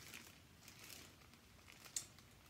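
Near silence with faint crinkling of plastic wrapping being handled, and one small click near the end.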